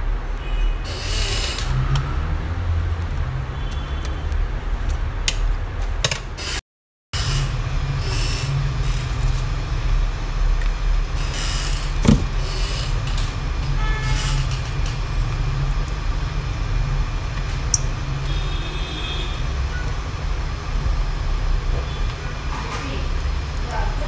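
A steady low rumble in the background, with scattered small clicks and taps of hands and a screwdriver working the metal hinges of a laptop screen assembly. A sharp click stands out about twelve seconds in, and the sound cuts out for about half a second shortly before that.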